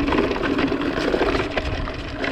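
Mountain bike rattling over a rocky dirt trail: tyres rolling over loose stones and slabs while the bike clatters with a dense run of small knocks.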